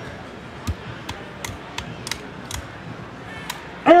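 Steady background noise broken by a run of sharp clicks, about three a second, six in a row, then one more near the end.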